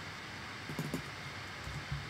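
Quiet room tone with a few faint, brief ticks from a computer mouse and keyboard as a value is typed into a Logic Pro field.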